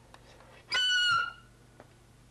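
Clarinet squeal: one short, shrill, very high note, about half a second long, starting a little under a second in. It is blown with the lip placed too far along the reed, a placement called hideous and not musical.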